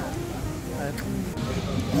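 Indistinct voices with background music, and a single click about halfway through.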